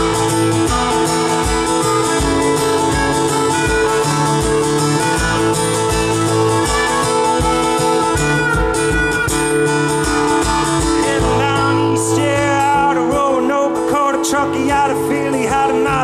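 Acoustic guitar strummed in a steady rhythm through an instrumental passage of a live song. A wavering melody line with bends joins over the guitar about twelve seconds in.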